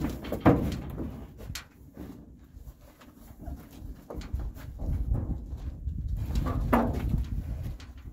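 Horse being tied up in a metal stock trailer: scattered knocks and clanks from the trailer as the horse shifts about, with two brief low voice-like sounds, one about half a second in and one near the end.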